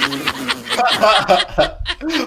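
Men laughing and chuckling, mixed with speech.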